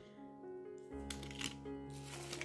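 Quiet background music of sustained notes that step from pitch to pitch, with a few brief rustles of plastic-packaged sewing notions being handled.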